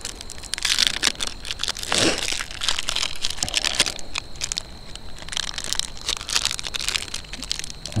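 Wrapper of a small ration chocolate bar being crinkled and torn open by hand: irregular crackling and crinkling.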